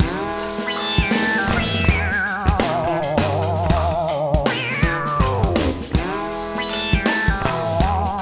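Psychedelic rock band playing: a synthesizer lead swoops down and up in long pitch glides, with a wavering vibrato passage in the middle, over bass guitar and drum kit.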